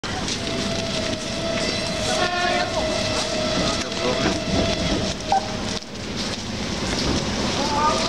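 ED4M electric multiple unit standing at a station platform, giving a steady tone that stops about six seconds in. Over it come passengers' footsteps in the snow and a few voices.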